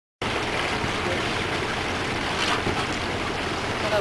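Steady rushing noise of a catamaran under way on calm water: water and wind noise on the camera microphone, cutting in suddenly just after the start.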